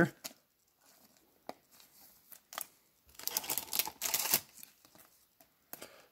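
Plastic and card handling: a few light clicks, then a spell of crinkling rustle about three to four and a half seconds in, as a chrome trading card is handled and a plastic top loader is readied.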